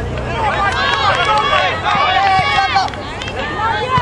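Spectators on a soccer sideline shouting and calling out, several raised voices overlapping without clear words.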